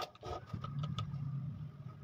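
A sharp click as a utility knife cuts through a thin plastic tube on a wooden block, followed by a few faint clicks of the blade, over a low steady hum.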